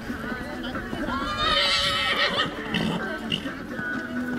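A horse whinnies once, a wavering call of about a second starting about a second in, over background voices.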